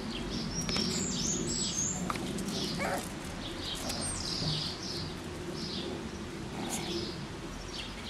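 Small birds chirping over and over: short, high, mostly falling chirps come several times a second over a low steady background rumble.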